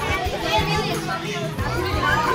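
Children's voices and chatter over a background music track of held notes.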